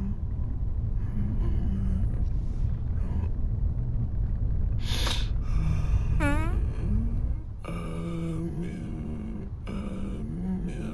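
Steady low rumble of a car driving, heard from inside the cabin. A brief hiss about five seconds in, a short pitched sound that bends down and up just after it, and a held low tone near the end sound over the rumble.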